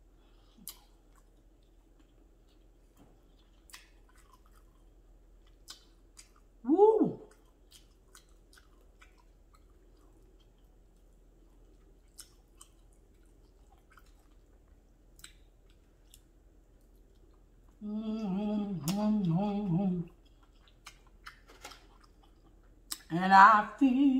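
A person chewing soft lo mein noodles, faint wet mouth clicks scattered through, broken by a short loud "mmm" about seven seconds in and a hummed "mmm" of about two seconds later on, with her voice starting again at the very end.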